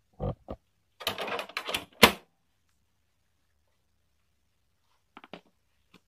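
Plastic access cover of an HP LaserJet 100 color MFP M175nw printer being swung shut over the toner carousel: a couple of light clicks, then a rattling clatter that ends in one sharp, loud snap as it latches about two seconds in. A few faint clicks follow near the end.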